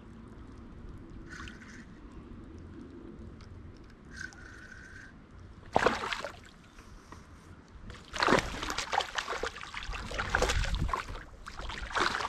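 A hooked bass splashing at the surface beside a kayak as it is reeled in. There is one burst of splashing about six seconds in, then continuous splashing with many sharp splashes from about eight seconds on.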